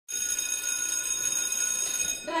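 An electric bell, like a school bell, ringing continuously with a high-pitched, unwavering ring.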